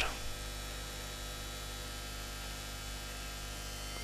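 A steady low electrical hum, with faint hiss, holding at an even level with no other events.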